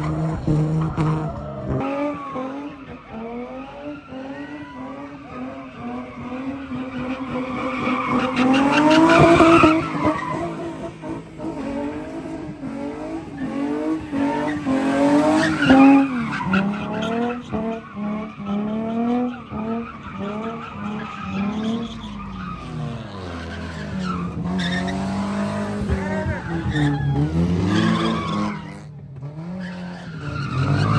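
Infiniti G35 sedan doing donuts: its engine revving up and down over and over while the spinning rear tyres skid on the pavement. The loudest climbs in pitch come about nine and fifteen seconds in.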